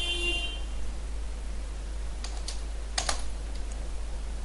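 Computer keyboard keystrokes: a few light clicks about two seconds in, then a louder pair about three seconds in, as a menu item's name is typed and Enter is pressed to move to the next line.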